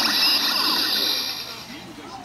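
DX Build Driver toy belt, loaded with the Tank and Vacuum Cleaner Fullbottles, playing an electronic transformation sound effect through its built-in speaker. The sound starts at once and fades out over about a second and a half as the belt's lights go dark.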